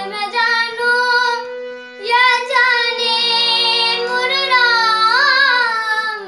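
A boy singing a held, ornamented melody with wavering pitch, accompanied by a harmonium's steady reed notes. The voice breaks off briefly about a third of the way in while the harmonium sounds on.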